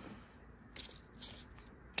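Faint rustling of a small paper booklet's pages being leafed through by hand: a soft click at the start, then a couple of brief page rustles about a second in.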